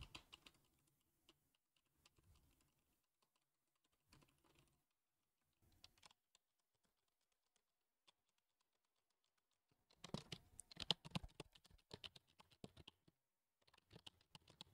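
Keystrokes on a small wireless Logitech keyboard, heard through a dynamic microphone with noise suppression on, which keeps them faint. Only a few scattered clicks come through at first, then a quick flurry of keystroke clicks over the last four seconds as the keys are typed right into the microphone.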